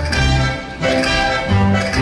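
Theatre orchestra playing a dance tune, strings over a regularly pulsing bass line.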